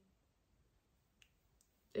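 Near silence: room tone in a pause between speech, with two faint short clicks a little past the middle.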